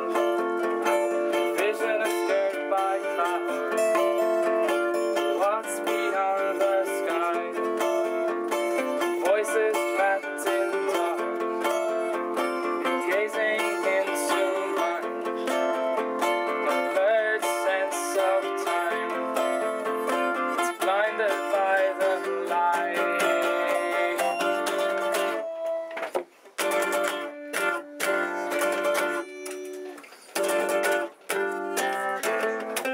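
Three acoustic guitars playing a song together, picked and strummed. The playing breaks off briefly twice near the end.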